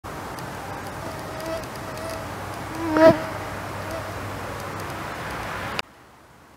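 Flying insects whining near the microphone over a steady outdoor hiss. One passes close and loud about three seconds in, its buzz bending in pitch. The sound cuts off just before the end.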